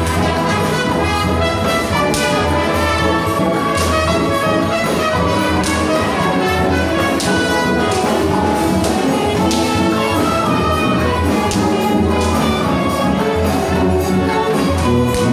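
Brass-led wind band (banda de música) playing a marcha junina: the melody is carried over a pulsing bass line and steady percussion, with a sharp crash every couple of seconds.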